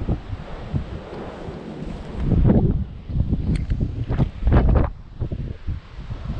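Gusty wind buffeting the microphone, a low rumbling rush with two stronger gusts in the middle.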